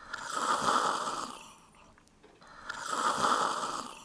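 A person snoring: two long snores, each swelling and fading over about a second and a half, the second about two and a half seconds after the first.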